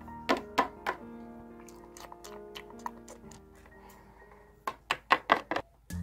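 Background music with sharp plastic taps of toy figurines knocked against a shelf as they are moved by hand. There are three taps in the first second, then a quick run of about six near the end once the music has faded.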